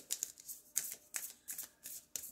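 A deck of oracle cards being shuffled by hand: a run of short, crisp card flicks and slaps, about three to four a second.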